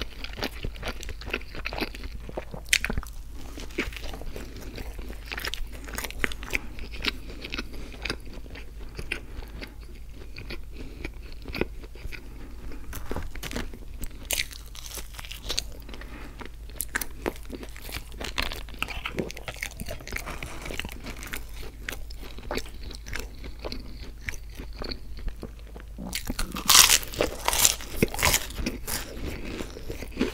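Close-miked eating of breakfast food: steady biting and chewing with many crisp crunches, and a louder run of crunchy bites near the end.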